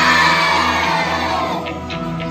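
A crowd of children cheering and shouting together, the loudest at the start and fading away over the two seconds, with background music underneath.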